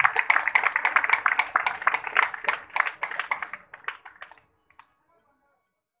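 Audience applauding, the claps thinning out and dying away about four seconds in.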